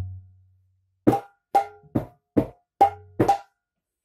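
Mridanga (Bengali khol), a two-headed barrel drum, played by hand in a slow practice pattern: a deep bass stroke rings out and fades at the start, then six separate strokes about half a second apart, several with a short ringing treble tone and the last with a deep bass boom.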